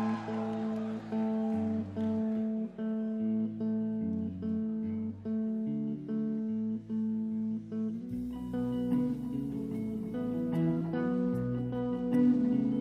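Live rock band opening a song with a slow, repeating guitar figure of held notes. About eight seconds in the sound fills out with deeper low notes and light cymbal ticks as more of the band joins.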